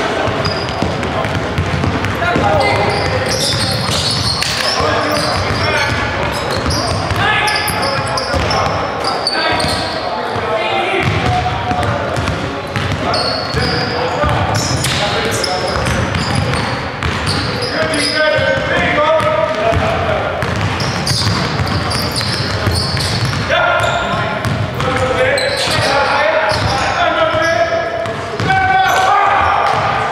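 Live basketball game in a gymnasium: a basketball bouncing on the hardwood court, with players shouting and calling out to each other, echoing in the hall.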